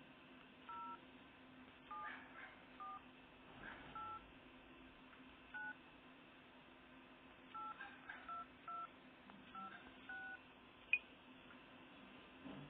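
Faint, short two-note DTMF touch tones from a smartphone dialer's keypad, one per key press, about a dozen at an uneven pace as a phone number is typed. A sharp click near the end.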